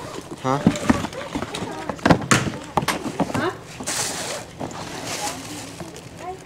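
Cardboard shoe boxes being handled: a series of knocks and scrapes, with rustling about four seconds in and again about five seconds in.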